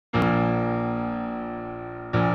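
A keyboard chord struck once just after the start, with a brief sharp click as it sounds, then ringing and slowly fading.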